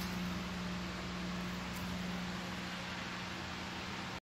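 Grow-room fan running: a steady, even hiss of moving air with a low steady hum beneath it.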